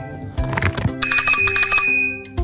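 A small bell, like a bicycle bell, rung rapidly for about a second from about halfway in, over background music.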